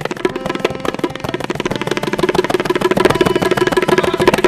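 Tabla played in a fast, dense run of rapid strokes, with a steady ringing pitch beneath them, growing slightly louder toward the end.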